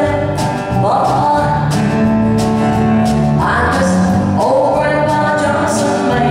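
A country song played live by a band with acoustic guitar, at a steady loud level, with a new melody line entering about a second in and again past the midpoint.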